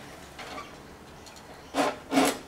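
Mostly quiet, then near the end a short scraping rasp as a walk-behind lawn mower is handled just before being pull-started.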